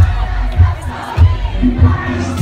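Loud dance music with a heavy bass beat, a bit under two beats a second, under a crowd shouting and cheering.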